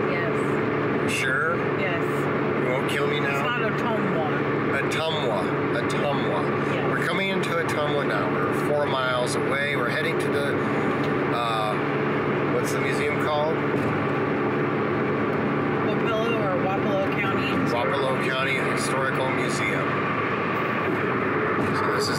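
Steady drone of a car's engine and road noise heard from inside the cabin while driving. A person's voice comes and goes over it without clear words.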